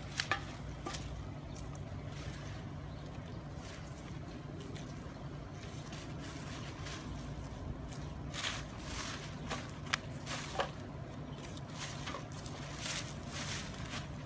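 Steady low hum of an idling bus engine, with scattered rustles and crinkles of litter being gathered into a plastic trash bag, more of them in the second half.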